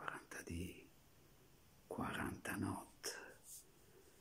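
A man's soft, close-up whispered speech in three short phrases, with hissing sibilants.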